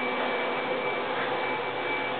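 Steady indoor background noise: an even hiss with a faint, high, steady whine and no distinct events.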